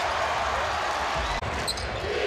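Basketball being dribbled on a hardwood court over the steady noise of an arena crowd, with a brief break in the sound a little past halfway.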